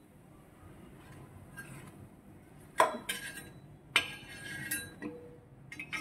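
A steel spatula clinking and scraping against a black iron pan as fried raw-banana slices are lifted out. After a quiet start come two sharp clinks about a second apart, then a few lighter knocks.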